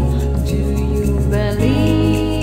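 Live-looped original jam song: sustained keyboard parts over a steady bass line and a light beat about two a second, with a woman's voice sliding up into a held note about one and a half seconds in.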